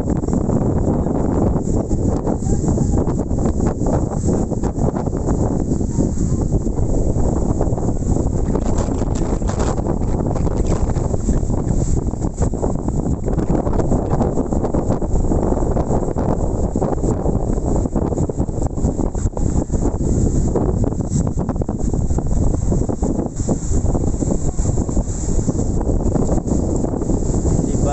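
Strong storm wind buffeting the microphone: a loud, steady low rumble that flutters rapidly with the gusts.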